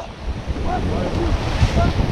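Rushing whitewater of a fast, silty river heard from a paddle raft, with wind buffeting the microphone as a low, steady rumble.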